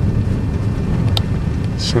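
Vehicle driving along a road: a steady low engine and road rumble, with a single sharp click a little after a second in.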